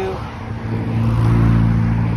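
A cargo van's engine running close by, a low drone that grows louder through the first second or so and holds steady.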